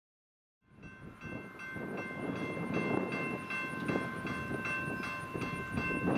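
Railroad grade-crossing warning bell ringing steadily, about two and a half strikes a second, over a low rumbling noise. It fades in from silence within the first second.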